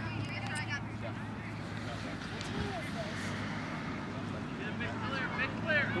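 Open-air field ambience: faint, distant voices and shouts of players and spectators over a steady low hum. A nearer voice starts calling out near the end.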